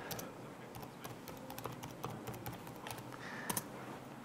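Typing on a computer keyboard: light, irregular key clicks with a somewhat louder click near the end.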